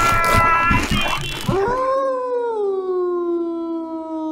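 A high, held scream over a clatter of thuds, cut off about a second in. Then one long wolf howl that rises and slowly falls, running on just past the end.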